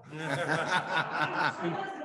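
A group of people laughing and chuckling together, with some talk mixed in.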